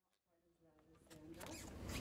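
Near silence at a cut in the recording, then room tone with a faint voice fading in over the second half.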